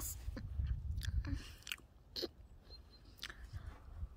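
Crunchy chewing and munching sounds, a scatter of short irregular clicks, standing for a horse eating grass. A low rumble runs under the first second and a half.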